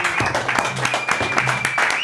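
A small group clapping and cheering: many quick, irregular claps, with a long high call held through the middle.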